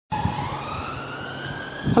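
A siren-like wail that climbs steadily in pitch over two seconds, with a low steady hum underneath.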